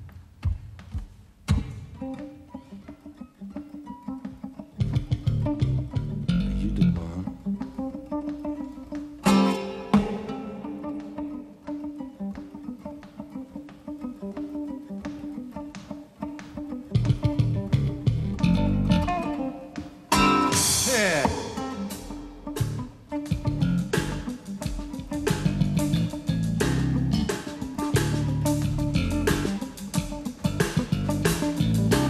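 Live jazz trio playing: an acoustic guitar picks over an electric bass guitar, with hand percussion. The band grows louder from about seventeen seconds in, and a bright crash comes a few seconds later.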